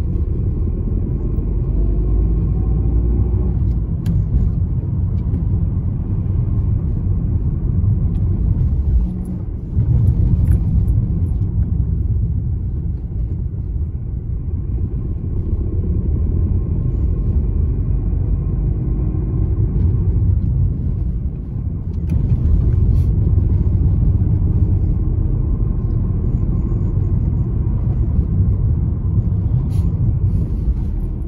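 A car driving, heard from inside the cabin: a steady low rumble of engine and road noise. The engine note rises faintly near the start and again about halfway through as the car picks up speed.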